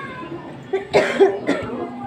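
A person coughing close to the microphone: a short run of two or three coughs about a second in.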